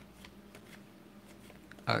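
Faint flicks and rustles of a hand-held stack of 1992-93 Topps basketball cards being slid one by one from front to back, with a few light clicks spread through. A man's voice starts a word just at the end.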